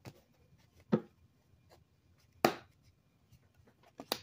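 Tarot cards and deck handled on a cloth-covered tabletop: three short knocks, the loudest about two and a half seconds in, with faint card ticks between.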